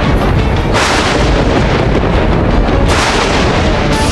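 Loud dramatic background score: a dense, continuous wash of music with deep booming hits and swelling surges.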